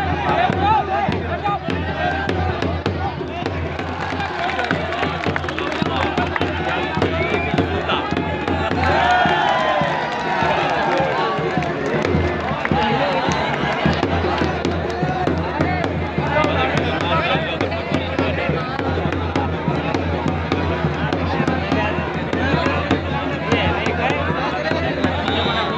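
Dhol drum beaten continuously with a stick amid a large crowd shouting and chattering.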